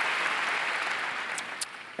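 A large audience applauding, the applause dying away over the last second.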